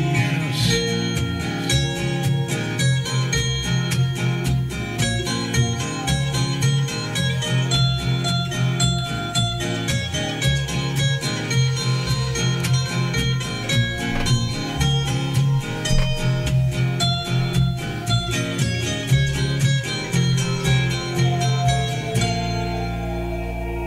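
A recorded song played back, led by strummed acoustic guitar with a steady, even rhythm.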